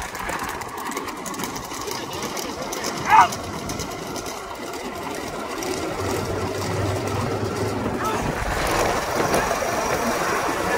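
Bullock cart race heard up close: a steady rushing noise of carts rolling and bulls running, with one short rising shout about three seconds in and a low engine hum from a motor vehicle from about six to eight seconds.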